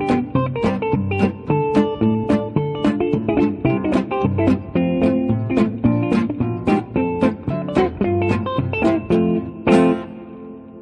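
Background music: a plucked guitar playing a quick, steady run of picked notes, ending on one strong struck chord near the end that rings out.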